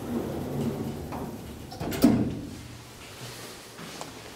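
Elevator door opening with a low rumble, then a sharp clunk about two seconds in, the loudest sound, which fades away.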